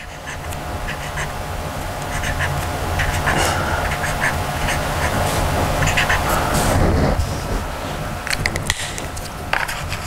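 Felt-tip marker squeaking and scratching on construction paper as a pattern is drawn in short strokes, over a steady low hum; the drawing sounds ease off in the last few seconds.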